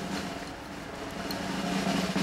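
A steady low drone of several held notes from the film score, slowly getting louder as a suspense build-up.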